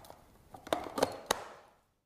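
A handful of light, sharp plastic clicks and knocks, most of them in the second half, from handling the removable plastic grounds chamber of a Cuisinart burr coffee grinder.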